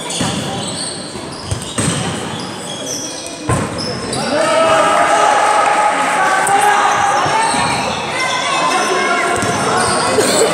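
Basketball dribbled on a sports-hall court, a few sharp bounces echoing in a large gym. From about four seconds in, players and spectators call out, louder than the bouncing.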